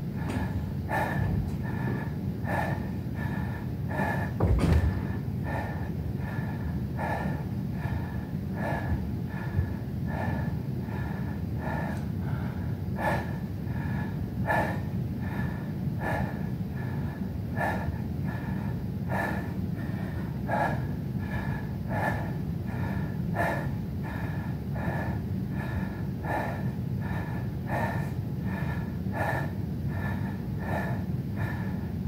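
A man breathing hard and rhythmically through his nose while holding a plank after push-ups, a puff in or out about every two-thirds of a second, over a steady low hum. A single low thump about four and a half seconds in.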